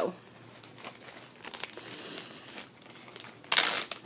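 Rustling and crinkling of material being rummaged through and handled while a cross-stitch project is searched for, with one short, loud crinkle a little before the end.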